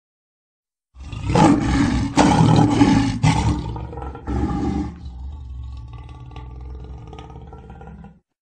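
A lion roaring: loud surges of roaring from about a second in, a shorter roar around four seconds, then a quieter fading tail that cuts off at the end.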